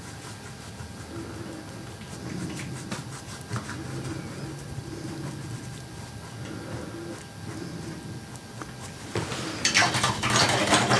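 Soft handling sounds of acrylic painting: a brush dabbing on a canvas board, with a few faint clicks. Near the end a louder clatter and swishing begins as the brush goes back to the palette.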